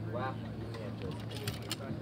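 A short indistinct voice just after the start, then a few light, sharp clicks in the second half, over a steady low hum.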